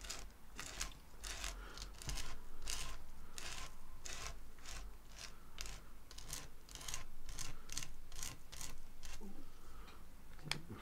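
Palette knife scraping embossing paste across a stencil on card, in repeated short strokes of about three a second.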